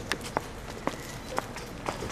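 Footsteps on a paved path, about two steps a second, each a short sharp tap.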